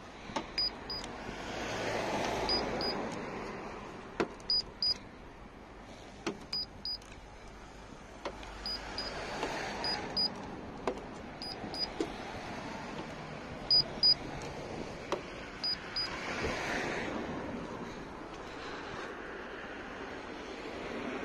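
A handheld paint thickness gauge giving a short, high double beep with each reading as it is pressed against the car's body panels, about ten times, a second or two apart. Under it, a soft rushing noise swells and fades three times.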